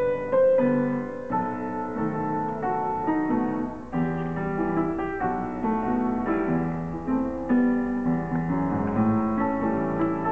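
Grand piano played solo in a jazz-style student recital piece: low chords under a melody, notes struck in a steady, continuous rhythm.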